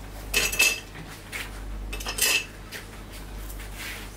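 Kitchen utensils and cookware clattering and clinking in two short bursts, the first about half a second in and the second just after two seconds in.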